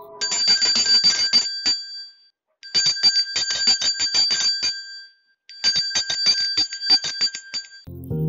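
Bicycle bell rung in three bursts of rapid dings, each about two seconds long, with short gaps between.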